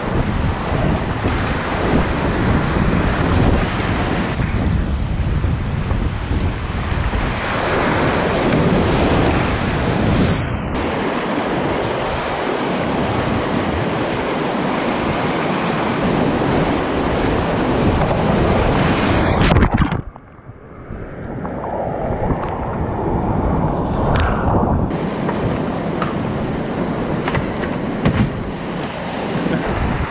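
Whitewater rapids rushing and splashing close around a kayak, with paddle strokes in the water and wind buffeting the action camera's microphone. About two-thirds of the way through, the sound suddenly turns dull and muffled for a few seconds, then the rush of the rapids returns.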